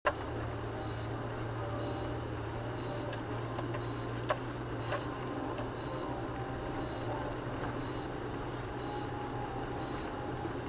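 Vehicle engine running steadily at low speed, heard from inside the cab, with a regular short high-pitched tick about once a second.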